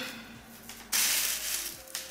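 Long straight wig hair rustling as it is gathered by hand into a ponytail: one brief hissing swish about a second in that fades out within a second.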